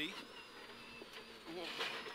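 Subaru Impreza rally car's flat-four engine running on the stage, heard faintly in the cabin under the in-car intercom, with a short burst of noise at the start. A brief voice comes in near the end.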